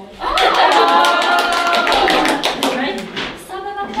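A small audience applauding for about three seconds, rapid dense clapping with women's voices over it, then dying away just before the end.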